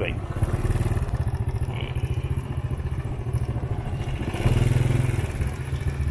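Motorbike engine running steadily as it rides along, with a louder stretch for about a second, about four and a half seconds in.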